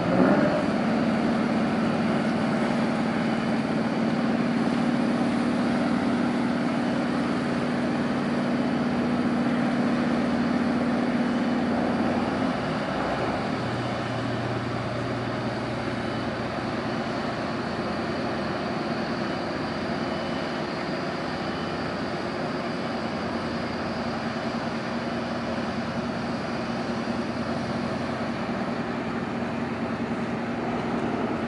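A crab boat's diesel machinery running steadily at close range: a steady hum over a wash of noise. About twelve seconds in the hum drops to a lower pitch and the sound gets a little quieter.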